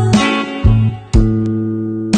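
Guitar playing an instrumental gap in a song: three chords struck about half a second apart, the last one left to ring and fade.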